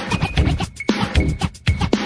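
Old-school DJ mix music: a fast drum beat with turntable scratching, short sweeping glides cutting in about once a second.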